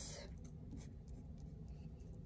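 Faint scratching of a fine-liner pen tip on drawing paper in a few short strokes, as the pen is tested; it is broken and barely writes.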